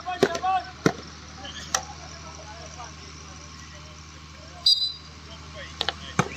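Over crowd chatter, a short, sharp referee's whistle blast about three-quarters of the way through. About a second later come sharp cracks of the hockey stick hitting the ball on a penalty stroke. Several sharp knocks are heard in the first two seconds.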